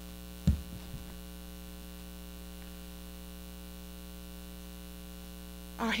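Steady electrical mains hum in the microphone feed. About half a second in comes one sharp, loud low knock with a softer one just after, as a page is turned at the pulpit close to the microphone.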